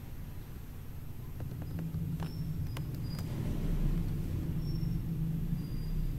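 A few faint computer-mouse clicks, spread over a couple of seconds, over a low steady background rumble.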